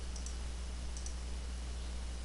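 Computer mouse buttons clicking: two pairs of quick, faint clicks about a second apart, over a steady low hum.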